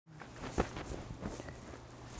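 Faint handling noise: a few soft knocks and rustles over a low steady hum, the loudest knock about half a second in.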